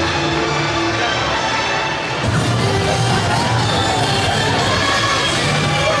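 Parade music playing loudly over a crowd, with cheering and children shouting; the sound steps up a little louder about two seconds in.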